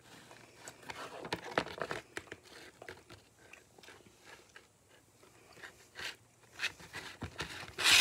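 Plain white slime being squeezed and worked in the hands, giving irregular small clicks, pops and crackles, with a louder crackle near the end.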